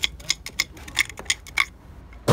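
A quick, uneven run of light, sharp clicks and ticks, a dozen or so in two seconds.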